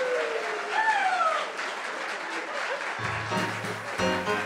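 Audience applauding with a few whoops after a song. About three seconds in, the live house band starts playing steady held chords over a bass line.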